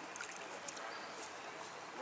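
Shallow creek water flowing in a steady, even rush, with a few faint short clicks.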